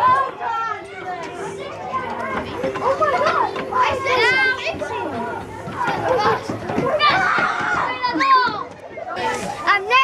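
Children's voices: several kids chattering, calling and squealing at play.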